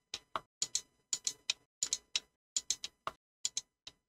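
Computer keyboard keystrokes: short sharp clicks in quick irregular runs of two or three, as line breaks are typed into a block of text.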